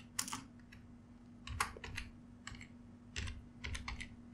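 Computer keyboard keystrokes, faint and irregularly spaced, as a short word is typed. There are about ten key presses, some in quick runs of two or three.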